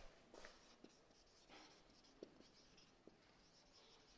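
Very faint squeaks and taps of a marker pen writing on a whiteboard, a few short strokes, the clearest a little over two seconds in.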